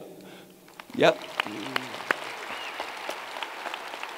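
Light applause, a steady patter of hand claps that starts about a second in.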